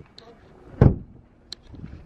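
Car door being opened from inside, with one dull thump just under a second in as it swings or shuts, and a light click about halfway through.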